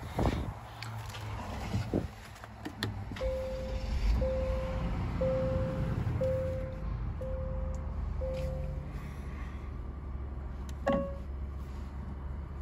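A Genesis car's warning chime beeping six times, about once a second, each beep one steady tone, followed near the end by a single brighter chime. A low steady hum runs underneath.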